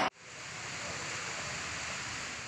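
A steady, even hiss of background noise with no tone or rhythm. A loud whooshing transition effect cuts off right at the start.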